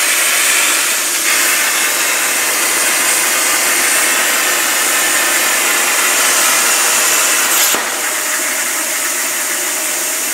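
CNC plasma cutter cutting steel plate: a steady, loud hiss of the arc and air jet. Near the end there is a short click, after which the hiss carries on slightly quieter.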